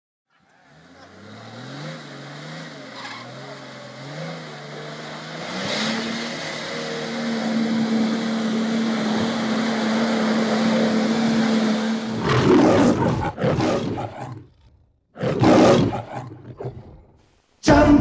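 A low drone that swells in over several seconds and holds one steady low note. It is broken off by two loud roar-like bursts of about a second and a half each, a few seconds apart.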